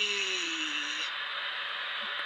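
Steady background hiss, with the drawn-out tail of a spoken letter "G" from the spirit-board app's voice fading out about a second in.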